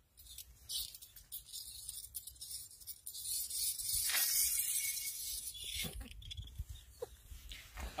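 Faint rustling hiss that swells in the middle and fades, with a couple of faint short sounds near the end.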